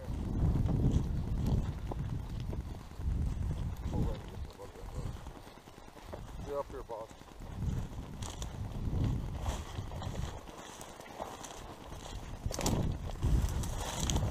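Footsteps through tall dry grass in an uneven walking rhythm, with the stalks swishing and brushing against the microphone.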